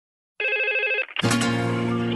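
A telephone rings once with an electronic warbling trill, lasting just over half a second. About a second in, music begins: a sustained synth chord over a steady bass.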